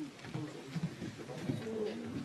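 A low, wordless voice murmuring, quieter than the surrounding dialogue, with one held note near the end.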